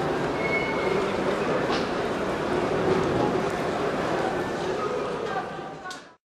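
Indistinct voices murmuring over a steady rumbling background noise, fading out near the end.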